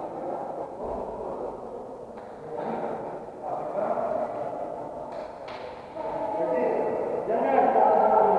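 Several people talking in a large, echoing sports hall, with a couple of brief knocks about two and five seconds in.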